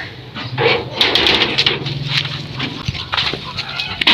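Goat bleating, one held call in the middle, over scuffling hooves and footsteps and the rustle of an armful of green fodder being carried.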